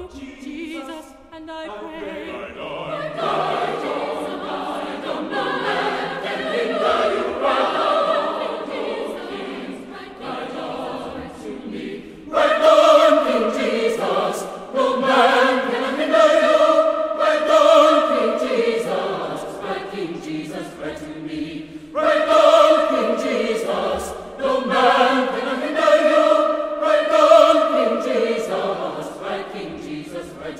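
A choir singing a spiritual, with sustained chords that move from note to note. The full choir comes in suddenly louder about twelve seconds in and again about twenty-two seconds in.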